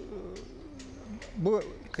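A man's voice between words: a low, drawn-out, wavering hum, then a short loud spoken syllable about a second and a half in.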